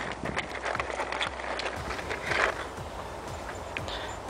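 Faint scattered clicks and rustles of handling close to the microphone, over a low outdoor rumble.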